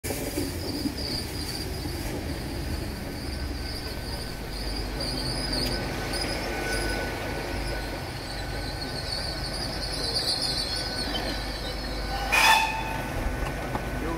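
GWR pannier tank locomotive No. 4612, a steam engine, rolling slowly into the platform with a high-pitched squeal from its wheels and brakes that wavers and comes and goes. Near the end comes a brief loud blast, about half a second long.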